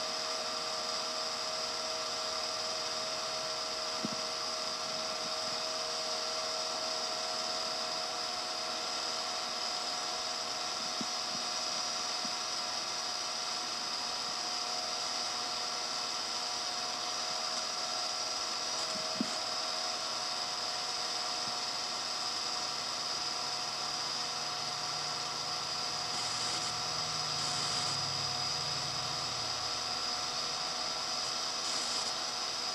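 A steady mechanical whir with hiss and several fixed whining tones, like a small motor running without a break. There are a few faint clicks, and a low hum joins in for the last several seconds.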